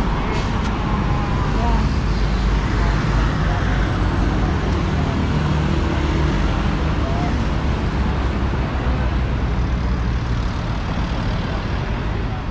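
Steady road traffic from cars and motorcycles passing on a busy road, with faint voices mixed in.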